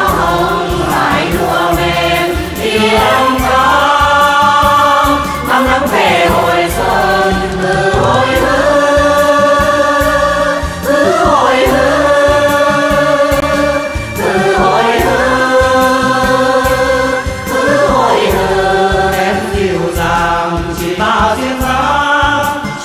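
A chorus sings a Vietnamese quan họ-style folk song with instrumental backing and a steady beat. The voices hold long notes with vibrato, and phrases change every few seconds.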